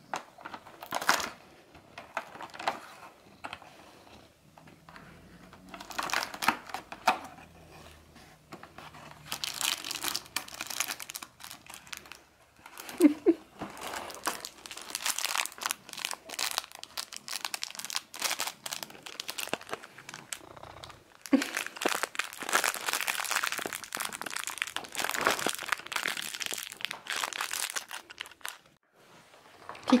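Cardboard cat advent calendar being torn and rummaged open by hand: irregular bursts of crinkling and tearing paper and card, busiest in the second half.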